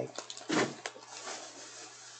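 Handling noise from rummaging through a shopping bag of purchases: a few light clicks and a louder rustle about half a second in, then a soft, steady rustling.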